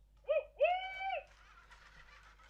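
Wonder Workshop Cue robot's speaker giving two hoot-like electronic tones, a short one then a longer held one, as its program starts. A faint whirring hiss follows as the robot begins to drive.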